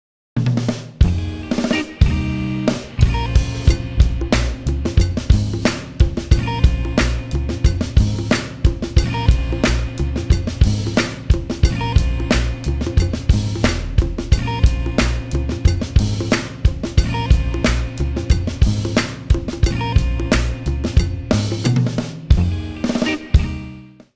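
Drum kit played in a steady groove with bass drum, snare, hi-hats and cymbals over a pitched backing track. It starts just after the opening and fades out near the end.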